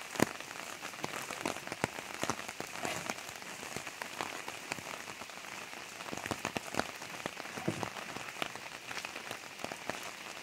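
Steady rain falling, with many sharp drop ticks scattered through it and one louder knock just after the start.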